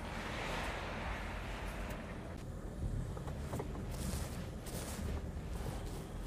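Chrysler Grand Voyager minivan driving slowly, its engine and tyres giving a low steady rumble, with a few sharp crackles in the second half.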